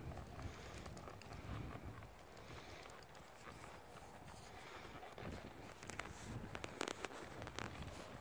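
Faint, muffled hoofbeats of a horse trotting on a soft dirt arena, with a few light clicks in the second half.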